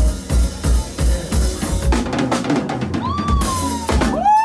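Live funk band with drum kit playing a steady kick-and-snare beat, about three kick hits a second, with the rest of the band filling in about halfway and a long sliding high note near the end.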